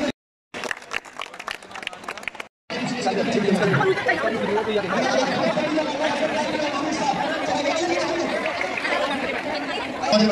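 A group of boys chattering and talking over one another, outdoors. It is preceded, in the first couple of seconds, by two brief cut-outs with scattered clicks and knocks between them.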